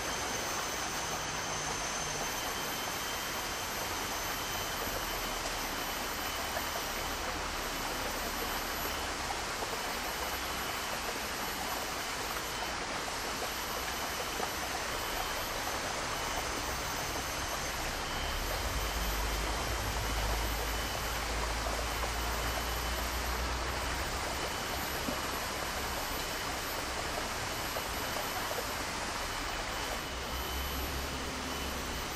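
A steady, even hiss with no speech, with a low rumble swelling for a few seconds past the middle and a faint high whine above it.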